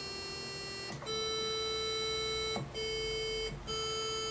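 Kiwi-3P-upgraded analog synthesizer sounding a held square-wave note, its two oscillators set to square waves and tuned together after adjustment to remove the beating between them. The note is steady and buzzy and breaks off briefly three times, as the key is pressed again.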